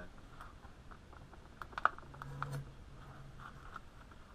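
Small clicks and taps of hands handling things on a workbench: a plastic blister pack and a knife handle scale set against a machete blade, with one sharper click just before the halfway point.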